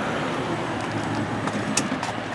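Steady low vehicle hum and rumble, with a few light clicks near the end.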